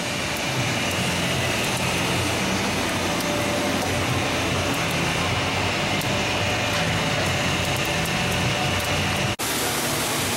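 Vincent screw press running steadily, its drive motor turned up to 120 Hz on a variable-frequency drive, giving an even mechanical noise with a faint steady high whine. The sound drops out suddenly for a moment near the end.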